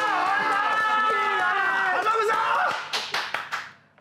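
Several men cheering and shouting in long, held calls, greeting a wrestler's ring introduction. A handful of hand claps follow about three seconds in, and the sound fades out just before the end.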